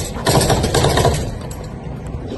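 Close handling noise on the recording phone's microphone as it is picked up and moved: a loud, crackling rustle and knocking for about the first second, then dropping to a lower steady outdoor background.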